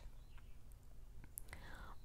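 Quiet pause in a woman's reading: a faint steady low hum with soft breath sounds and a small mouth click about two-thirds of the way through.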